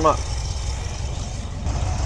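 Ford 302 small-block V8 with a four-barrel Edelbrock carburetor and the air cleaner off, idling steadily while it warms up.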